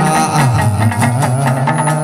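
Chầu văn ritual music: a low melody line slides down in pitch about half a second in and climbs back up, over repeated percussive clicks.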